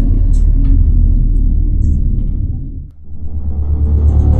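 Deep low rumbling logo-intro sound effect with a dark music bed, fading out about three seconds in, then a second deep rumble swelling in for the next logo card.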